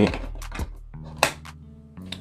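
Plastic earbud clicking into its charging case: a couple of light taps, then one sharper click a little over a second in as it seats, over soft background music.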